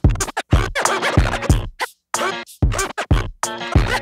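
Vinyl record scratched by hand on a turntable, chopped by the mixer's fader into short, sharply cut strokes, over a drum beat with a kick about twice a second. The sound drops out to silence between cuts.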